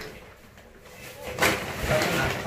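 A large woven plastic storage bag rustling briefly as it is handled, with one short scrape-like rustle about a second and a half in.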